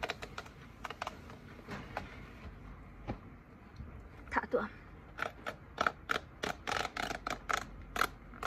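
A paper tear strip being peeled off a cardboard chip box, tearing away in a run of short crackling ticks that come thickest in the second half, about three or four a second.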